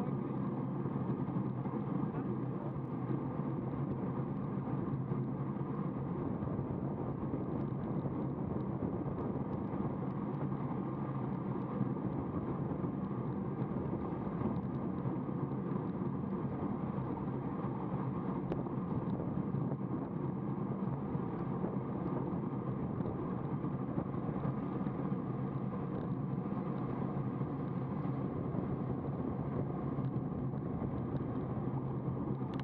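Steady rush of wind and road noise on a road bike's camera microphone at about 36–39 km/h, unbroken and dull, with no high end.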